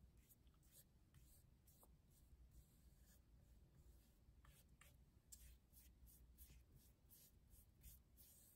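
Faint paintbrush strokes on a stretched canvas, brushing paint along its edge: a string of short, scratchy strokes that come more often in the second half.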